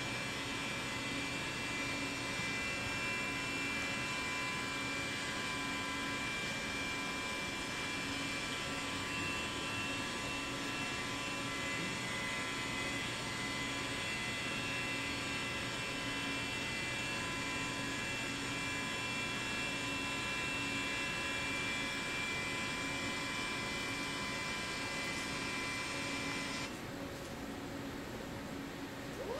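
5-axis CNC machine spindle running steadily with a high whine as its cutter machines a high-density urethane (butterboard) mold, played back through room speakers. The whine cuts off suddenly near the end.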